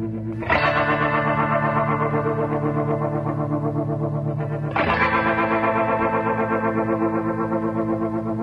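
Background instrumental music: held chords with a steady rippling pulse, a new chord struck about half a second in and another near five seconds.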